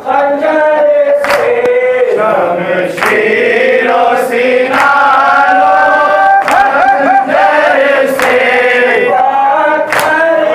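A group of men chanting a nauha, a Shia lament, in unison behind a lead reciter on a microphone, with wavering, drawn-out sung lines. Sharp strokes of chest-beating (matam) fall in time with the chant about every second and a half.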